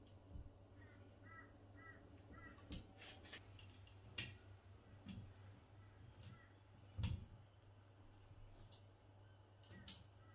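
Faint metallic clicks and small knocks of a hex key turning the grub screws in a chrome towel rail's wall brackets, the loudest knock with a dull thump about 7 s in. Under a low steady hum, a bird gives four short calls between about one and two and a half seconds.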